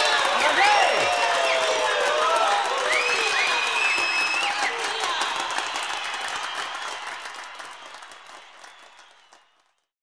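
A crowd applauding and cheering, with scattered shouts and whoops, as a song ends. The sound fades out gradually and is gone about nine and a half seconds in.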